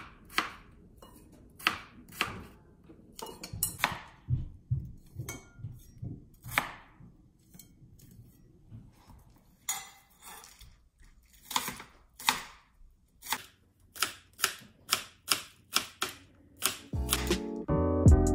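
Kitchen knife cutting peeled raw potatoes and then chopping green onions on a plastic cutting board: a series of sharp knife strikes against the board, coming quicker in the second half. Music comes in near the end.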